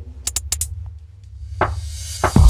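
Electronic dance track at a thinned-out break: a low bass hum held under a few sharp clicks, with a drum hit near the end.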